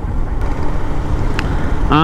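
Wind rushing over the microphone with road noise from a motorcycle riding along at speed, and two faint ticks about a second apart.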